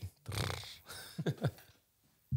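Two men laughing briefly in short breathy bursts, dying away after about a second and a half.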